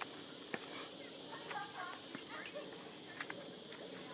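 Quiet outdoor ambience: a steady hiss with faint distant voices, and a few light clicks and scuffs from climbing gear being handled and a person stepping on rock.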